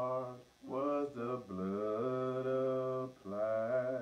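A man singing a hymn unaccompanied, in slow phrases with drawn-out notes and a long held note in the middle.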